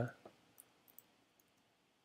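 A few faint computer keyboard key presses, isolated clicks about half a second to a second in, as new lines are entered in a code editor.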